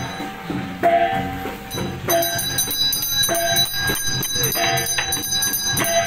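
Chinese ritual percussion: a steady beat of gong and drum strikes, about one and a half a second, each leaving a short ring, over continuous high bell ringing.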